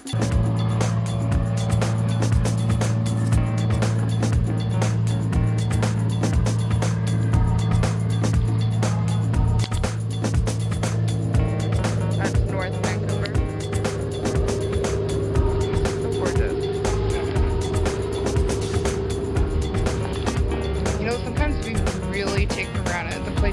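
A harbour tour boat's engine running with a steady low drone, with wind buffeting the microphone in irregular gusts.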